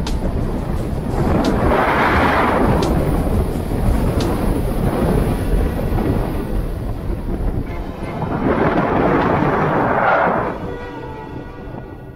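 Snowboard sliding and carving over groomed snow, the edge scraping loudly through turns, with wind rushing over the camera microphone. The scrape surges about two seconds in and again about nine seconds in, then eases off near the end.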